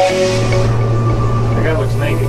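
Background music cuts off just after the start, leaving a steady low hum from the air conditioning of an enclosed Ferris wheel gondola.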